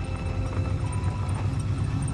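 Car engine running with a rhythmic, choppy low pulse as a black El Camino-style car pickup rolls slowly forward, with music faintly underneath.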